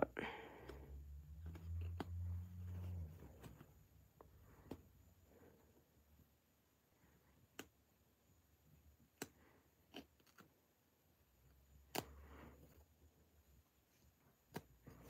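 Seam ripper cutting the stitches of a suit jacket's sleeve lining: faint, isolated snicks several seconds apart as threads are cut. A low hum is heard during the first few seconds.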